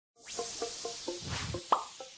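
Electronic intro sting for an animated logo: a soft whooshing hiss under a run of short pitched blips, about four or five a second, ending in one louder rising pop near the end.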